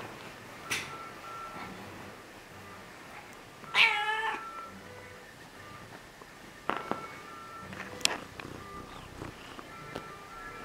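Domestic cat meowing once, a short call of about half a second, about four seconds in.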